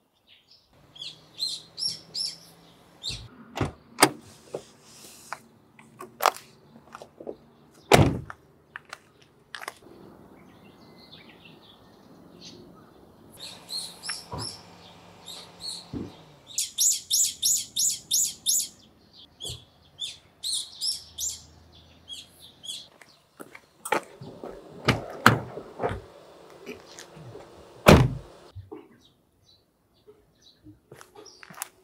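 Birds chirping in quick high runs of notes, with scattered sharp knocks and thumps; the loudest thumps come about four and eight seconds in and again near the end.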